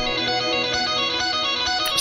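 Electric guitar lead line from a hip-hop beat loop playing on its own, with no drums or bass under it: a run of plucked notes.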